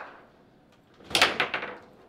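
Foosball table in play: a quick clatter of hard knocks about a second in as the ball is struck and rebounds off the players and walls, with the rods knocking.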